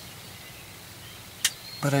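Quiet outdoor ambience with a faint steady hiss, broken by one sharp click about one and a half seconds in; a man's voice starts right at the end.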